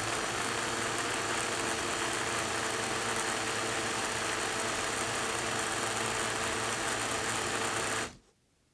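Qooca battery-powered portable blender running steadily, its motor and blade whirring through a smoothie with an even hum, not unpleasantly loud. It cuts off abruptly right at the end as the button is released.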